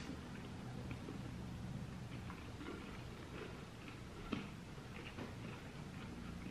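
Faint chewing of a chocolate with a liquid syrup centre: small wet mouth clicks scattered through, one sharper click about four seconds in, over a low steady room hum.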